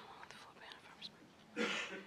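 Speech only: faint, soft talk in a quiet meeting room, with a louder spoken word near the end.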